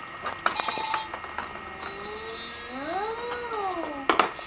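Plastic clicks and knocks from a toy farm play set being handled, with a short steady electronic-sounding tone about half a second in. In the second half comes a single animal-like call that rises and then falls in pitch, lasting a little over a second.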